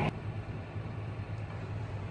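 Tractor engine running steadily, heard from inside the cab as a low, even drone.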